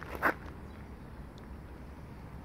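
A short hiss about a quarter second in, then a steady low outdoor background rumble.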